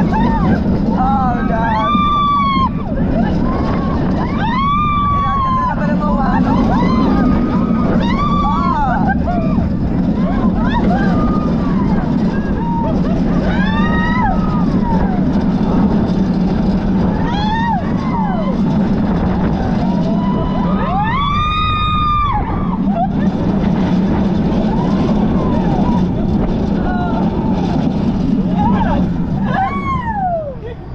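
Steel roller coaster train running through its course, with steady rushing wind and track noise on the chest-mounted camera, while riders scream again and again in short rising-and-falling cries, loudest about two-thirds of the way in.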